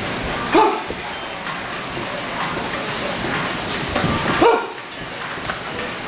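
Steady background din of a busy gym, broken twice by a short, loud sound with a quick pitch glide: just over half a second in, and again about four and a half seconds in.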